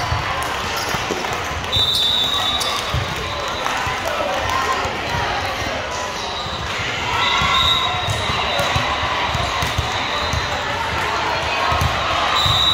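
Volleyballs bouncing and thudding on a hard gym floor, with shrill referee whistles blowing now and then and many voices of players and spectators, all echoing in a large indoor sports hall.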